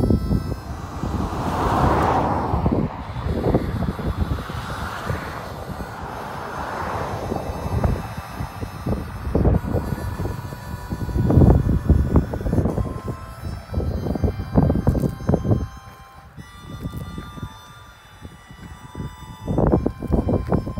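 Harmonica playing held notes, with wind gusts rumbling on the microphone.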